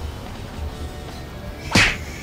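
A single sharp whip-like whoosh near the end, brief and much louder than anything else, over steady background music with a low beat.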